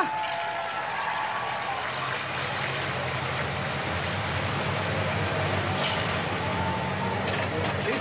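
Stripped-down Model T Ford's four-cylinder engine running steadily at low revs, with faint voices behind it.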